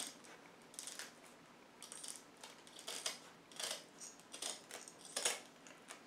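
Scissors snipping through woven trampoline cloth, a faint, irregular series of cuts about once a second.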